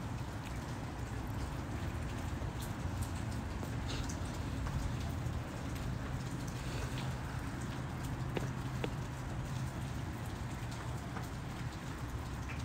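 Steady rush and trickle of running water from a reef aquarium's circulation, with a few faint scattered ticks.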